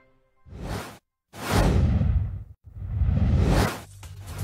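Whoosh transition sound effects from a TV news ident: a short whoosh about half a second in, then after a brief dead gap two longer swelling whooshes, one after the other.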